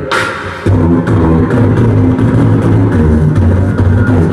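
A man beatboxing into a microphone. A short hiss opens it, then from about half a second in a low hummed bass line steps up and down in pitch under regular mouth clicks and snare sounds.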